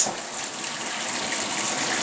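Water running steadily from a pull-out kitchen faucet's spray head into a sink, an even hiss.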